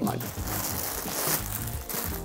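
Quiet background music with a faint rustle of plastic packaging being handled.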